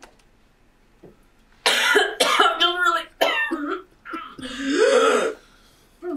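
A person's stifled laughter breaking out in cough-like bursts, ending in a drawn-out voiced sound. It starts about a second and a half in, after a short quiet spell.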